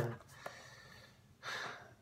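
A man's short, audible breath about one and a half seconds in, after the last word of a sentence trails off at the start.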